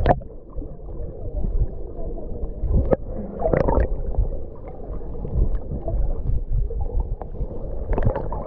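Muffled underwater sound picked up by a camera held below the surface: a steady low rumble of moving water, with a few short knocks and bubbling gurgles, the loudest about three and a half seconds in.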